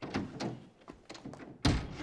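A single heavy thump about one and a half seconds in, after some softer rustling movement.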